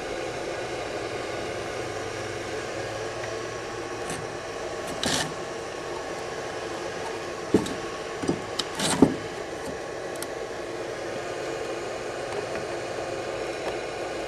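A few light knocks and clicks of metal electrode plate stacks being handled and set into a plastic box, scattered between about five and nine seconds in, over a steady background hum.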